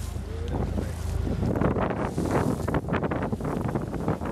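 Wind buffeting the microphone on the open deck of a moving sightseeing boat, over the steady low hum of the boat's engine and the rush of water along the hull.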